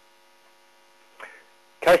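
Faint, steady electrical hum made of several tones, in a pause of a man's speech. He starts speaking again near the end.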